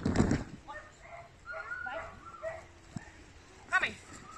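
A dog barking and yipping excitedly while running an agility course, with a quick run of high yelps near the end. A loud noisy burst at the start.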